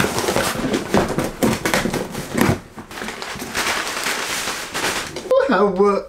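Packaging rustling and crinkling as a parcel is opened by hand, with many small crackles. Near the end, a short voiced exclamation cuts in.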